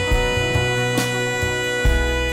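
Band music with no singing: one long held melody note over a bass line, with a light percussive hit about a second in.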